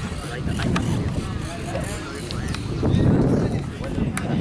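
Wind rumbling on the microphone at an outdoor football pitch, heaviest about three seconds in, with faint distant voices of players and spectators.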